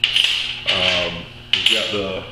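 Cut-off fork and knife pieces clinking against a steel workbench top as they are picked up and set down: two sharp metallic clinks about a second and a half apart.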